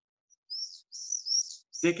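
A few short, high, gliding chirps of a bird in quick succession, thin and high-pitched as heard through a video-call audio feed.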